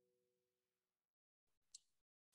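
Near silence: the faint tail of plucked guitar notes from the track playback dies away in the first second, with one tiny click near the end.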